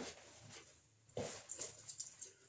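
Short, forceful exhalations from a man performing karate techniques. One comes as he starts moving and a stronger one about a second later, followed by quicker sharp breaths and swishes near the end.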